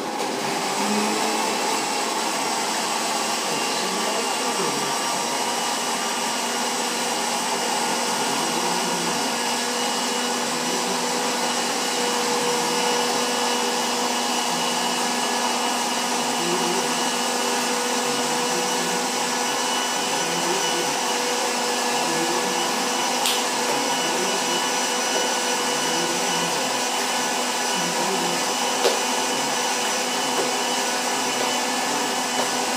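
Glass-jar countertop blender switched on and running steadily at full speed, puréeing frozen corn with a little boiling water. The motor is loud.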